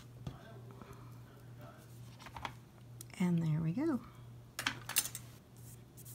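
Hands handling cardstock on a clear plastic stamp-positioning platform: light taps, clicks and paper rustles, with a clutch of sharper clicks about five seconds in. A brief wordless voice sound, like a hum, comes about three seconds in, over a low steady hum.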